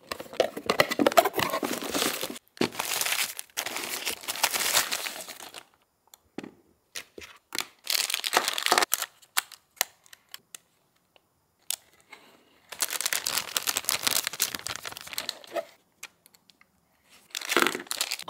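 Unboxing noise: a cardboard box being opened and plastic packaging crinkled and torn off a camera, in rustling bursts for the first five or so seconds and again from about 13 to 16 s, with scattered small taps and clicks of parts being set down in between.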